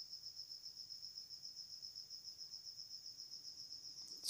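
A cricket chirping: a faint, high, rapidly and evenly pulsing trill that runs on steadily.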